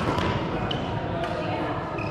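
Badminton doubles rally on an indoor court: sharp racket-on-shuttlecock hits and a brief shoe squeak on the court floor, with voices in the background.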